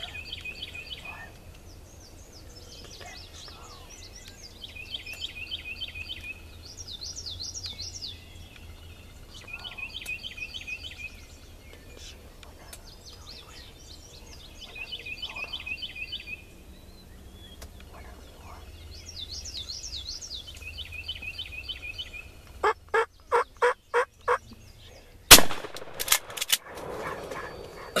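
Wild turkey gobbler gobbling again and again, then a quick run of about six sharp calls. About 25 seconds in comes a single very loud gunshot, followed by a few more knocks and a rustle.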